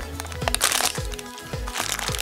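Plastic-foil blind bag being torn open by hand, crackling and crinkling in two spells, about half a second in and again near the end, over background music with a steady beat.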